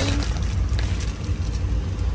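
Steady low rumble of a 15-foot box truck's engine and road noise, heard inside the cab, with a few faint rustles from a bag being searched.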